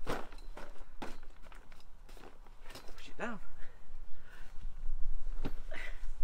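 A metal-framed folding camping chair being opened out and set down. Its frame gives several separate clicks and knocks, the sharpest at the start and about five and a half seconds in, with fabric rustling in between.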